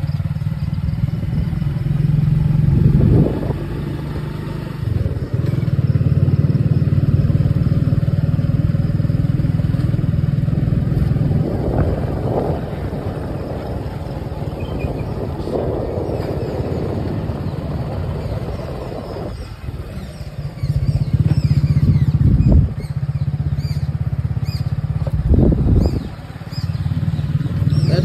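Motorcycle engine running while riding along at low speed. Its low hum drops away several times and picks up again as the throttle is eased and reopened.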